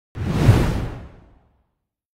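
Whoosh sound effect with a deep low end, swelling quickly and fading out within about a second.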